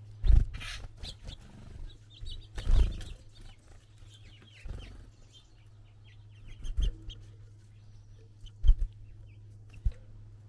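Small birds at a platform seed feeder, close to the microphone: irregular loud bumps and wing flutters as they land, hop and take off, about six in ten seconds. Faint high chirps come between them, over a steady low hum.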